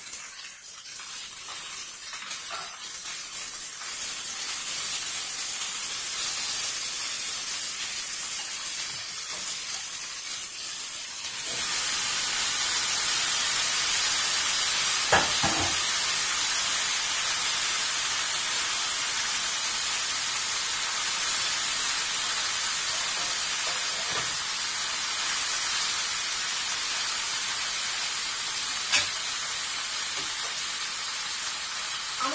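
Chicken, peppers and onions frying in a skillet, then with cut potatoes added: a steady sizzle that grows clearly louder a little over a third of the way in. A single sharp knock about halfway through and a small click near the end.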